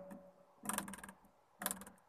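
Acoustic guitar strings plucked twice, giving short, faint, rattly clicks instead of a ringing note: the damaged strings no longer sound properly, which the player calls not good anymore.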